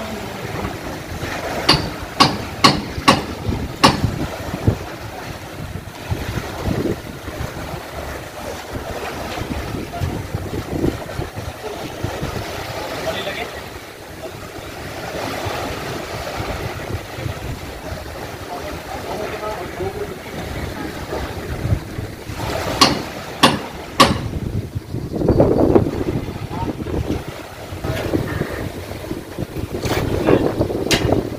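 Wind buffeting the microphone over small waves lapping on a sandy shore, with a run of sharp clicks about two seconds in and a few more about three-quarters of the way through.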